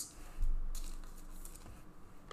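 Clear plastic wrapper around a trading card rustling as the card is handled: a short rustle about half a second in that fades away.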